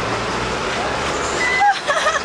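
Road traffic on a busy street, with a low engine hum from a nearby vehicle that fades away early on. A short high tone that bends downward sounds near the end.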